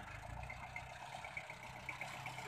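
Faint, steady low rumble of a VST Shakti MT 270 27 hp mini tractor's diesel engine running as the tractor crawls over loose gravel with a seed drill hitched behind.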